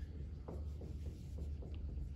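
Marker writing on a whiteboard: a run of short strokes, one after another, over a steady low hum.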